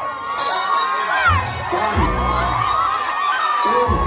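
Concert crowd screaming and cheering, many high voices rising and falling over one another, with music and a bass beat playing underneath.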